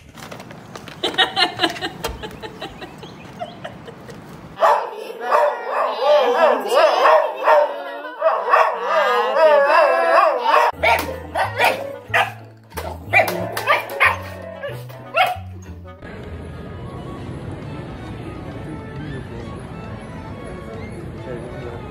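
A boxer dog vocalizing in long, wavering howl-like notes, then short barks, with music carrying a stepped bass line underneath from about halfway.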